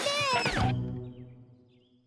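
Cartoon background music with a short spoken line in the first second; the music then fades out to near silence.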